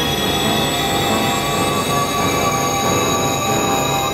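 Dense experimental synthesizer drone: several high, sustained whistling tones layered over a noisy, even bed of sound, with no beat.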